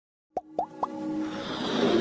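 Intro sound effects for an animated logo: three quick pops, each a short upward blip, about a quarter second apart, then a hiss with held tones that swells louder.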